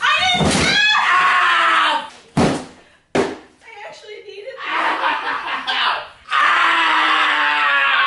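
Loud yelling and screaming, broken by two sharp thumps a little over two and three seconds in as a cardboard moving box is jumped on and crushed.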